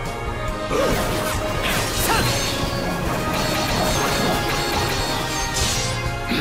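Dramatic background music with fight sound effects laid over it: several sudden crashing hits and whooshes, one about a second in, another around two seconds in, and one near the end.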